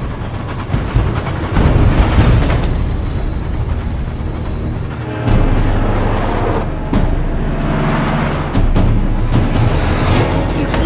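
Action-film soundtrack: dramatic score mixed with the rumble of a moving train, with a deeper low rumble coming in about five seconds in.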